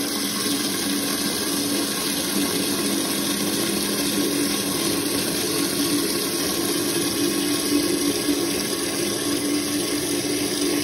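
Toilet cistern refilling through its fill valve: a steady rush of water into the tank with a faint hum underneath.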